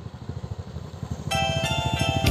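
Motorcycle engines running as a group of bikes rides past, a low, rapid, even beat. Music with sustained tones comes in over them near the end.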